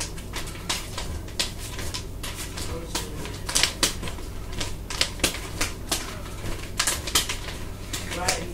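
Nunchaku being twirled and caught, giving quick, irregular sharp clacks as the handles strike the hands and body, with a few louder cracks about three and a half, five and seven seconds in.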